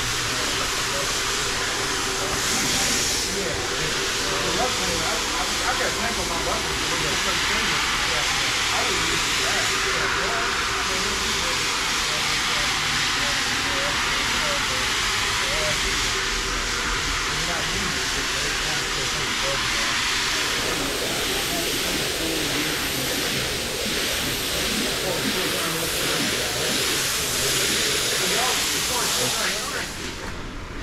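Rotary floor machine scrubbing shampoo into a wool rug: a steady motor drone under a dense brushing hiss. Later, a high-pressure water jet spraying onto the rug, another steady hiss.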